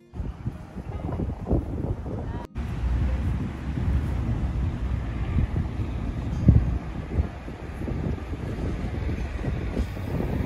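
Wind buffeting the microphone: a steady low rumble with gusts. It breaks off for an instant about two and a half seconds in.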